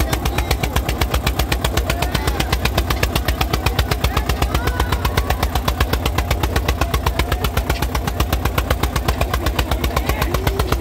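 Eicher 241 tractor's single-cylinder diesel engine running at a steady speed, its exhaust beating evenly at about nine pops a second.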